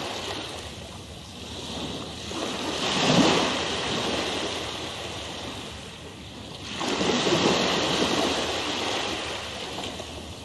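Ocean waves washing in and drawing back, the surge swelling to a peak about three seconds in and again about seven and a half seconds in.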